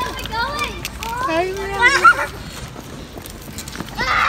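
Young children's high-pitched voices, chattering and calling for about two seconds without clear words, then quieter outdoor background noise.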